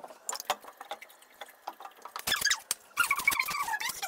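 Faint light clicks and knocks of things being handled on a kitchen counter. In the last second comes a louder, high-pitched squeal with a wavering pitch, which fits a child's voice.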